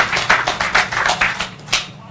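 An audience clapping, the claps thinning out and stopping about a second and a half in.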